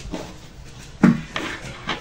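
Cut fabric pieces rustling and rubbing against each other and the tabletop as hands smooth and position them, with short scratchy handling noises.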